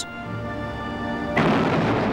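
Background music holding a steady chord. About one and a half seconds in, a single heavy gun boom from a naval deck gun breaks in over it and rumbles away.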